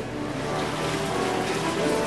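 Background music with held notes over a steady rushing noise.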